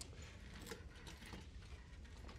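Near silence: quiet room tone with a low hum, a faint click at the very start and a few soft rustles.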